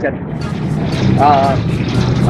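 A steady low motor drone runs under a man's brief drawn-out 'aa' about a second in.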